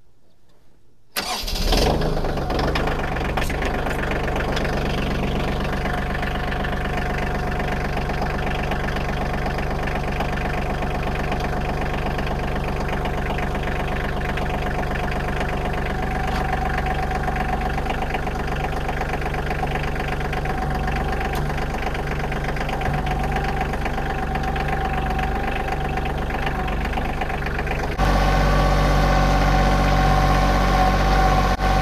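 Kioti CK2610 compact tractor's three-cylinder diesel engine starting about a second in and settling straight into a steady idle. Near the end it sounds louder and deeper.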